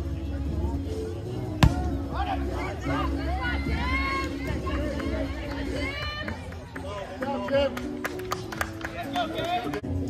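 Background music with voices over it, and one sharp thump about one and a half seconds in: a rubber kickball being kicked.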